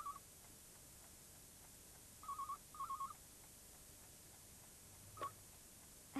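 Telephone ringing with a British double ring: a warbling pair of rings at the start and another pair about two seconds in, then a brief blip near the end.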